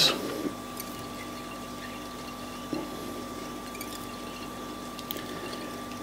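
Quiet room tone: a steady faint hum with two held tones over a light hiss, and one soft click a little under three seconds in.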